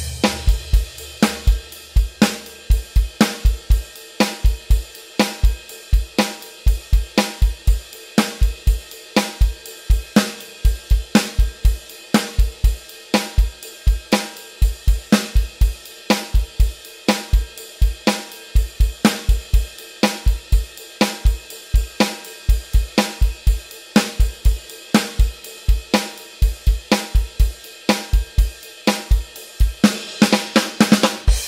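Electronic drum kit played alone, with no backing track, in a steady rock groove of bass drum, snare and cymbals at full tempo.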